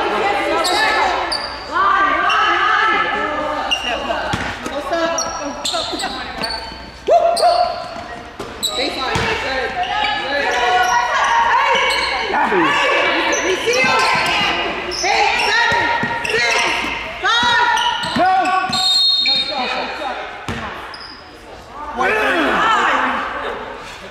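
Gym sounds of a basketball game in play: players and spectators calling out, a basketball bouncing on the hardwood court, and short high-pitched squeaks of sneakers, with echo from the hall.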